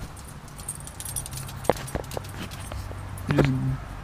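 Camera handling noise: scattered light clicks and rattles of a phone and GoPro being held and moved, over a low steady hum. A short voice sound comes near the end.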